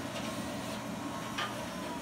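Steady low hum and hiss of room noise, with two faint clicks, one near the start and one a little past halfway.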